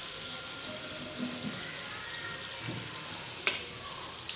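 Noodle pakoras sizzling as they deep-fry in hot oil in a kadai, a steady crackling hiss. A sharp click of metal tongs against the pan comes near the end.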